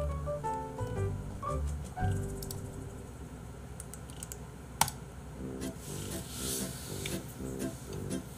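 Soft instrumental background music with a gentle repeating pattern, over a few light clicks like keyboard typing and one sharp click about five seconds in.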